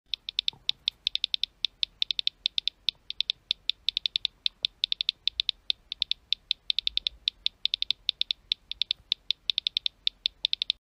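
Key clicks of a phone's on-screen keyboard during fast typing: short, high clicks about seven a second, in uneven runs with brief pauses.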